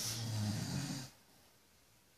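An elderly man snoring in his sleep: one long, rough snore that stops about a second in.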